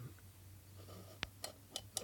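Faint clicks and ticks of a small plastic pump housing being handled in the fingers, one sharper click a little past a second in, over a low steady hum.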